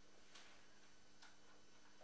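Near silence: a faint steady electrical hum, with two faint ticks about a third of a second and a second and a quarter in.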